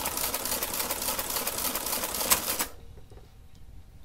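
Olivetti Multisumma 20 electro-mechanical adding machine running through a motor-driven cycle after a key press, its mechanism clattering rapidly, with a sharp click near the end before it stops suddenly about two and a half seconds in.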